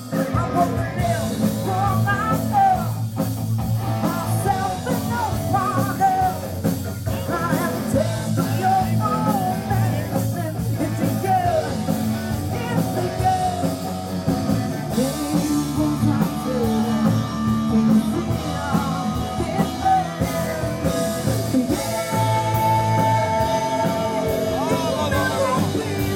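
Rock song with a singing voice over electric guitars.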